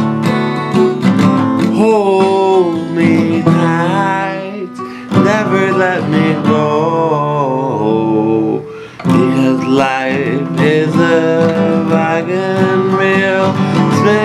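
Country-style song with strummed acoustic guitar and a wavering melody line over it. There are two brief dips in loudness, at about four and a half seconds and just before nine seconds.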